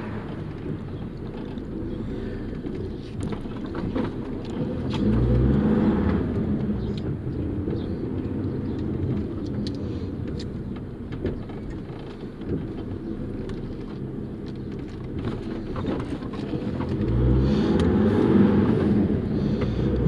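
Bus engine running, heard from inside the moving bus, with a steady low drone. The engine note rises and gets louder twice, about five seconds in and again near the end, as the bus accelerates.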